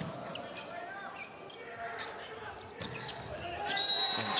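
Volleyball rally in a large indoor hall: several sharp strikes of the ball over a steady murmur of crowd voices, with the crowd getting louder near the end.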